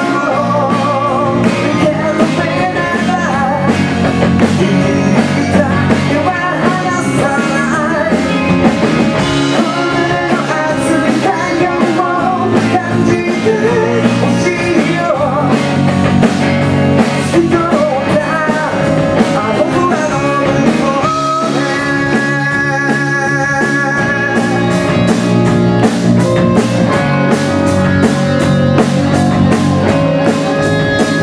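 A live rock band playing: a male lead vocal singing over electric guitars, bass and a drum kit. About two-thirds through, the singing breaks off for an instrumental stretch of held notes, and the cymbals then keep a fast, steady beat.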